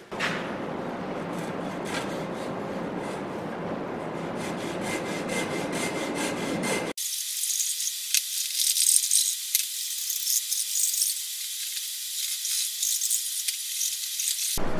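A steady rough noise for about seven seconds, then, after a sudden cut, a thin high scratchy sound in repeated strokes: a steel hand scraper being worked over pine.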